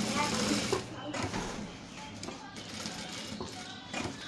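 Industrial sewing machine stitching through a thick rug made of knit-fabric strips, while the bulky rug is pushed and turned under the presser foot.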